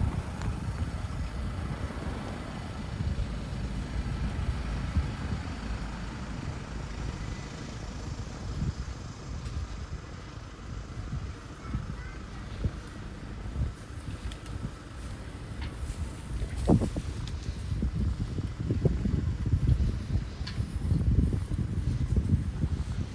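City street ambience: a low, uneven rumble of wind on the microphone mixed with road traffic, with a single short knock about three-quarters of the way through.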